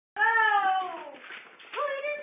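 A high-pitched wailing cry that slides slowly down in pitch over about a second, followed near the end by a short upward cry. It is either a young child's whine or a cat's meow.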